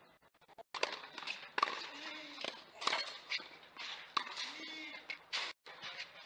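A tennis rally on a clay court: a series of sharp racket hits on the ball, about a second or so apart, several of them with a player's grunt.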